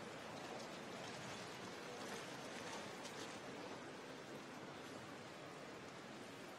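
Faint, steady background noise of an indoor swimming arena in the hush before a race start, with no distinct events.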